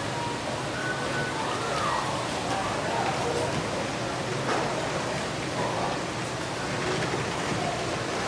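Water running steadily down a gem-mining sluice flume, a constant rushing noise, with a wooden screening box being worked in the stream.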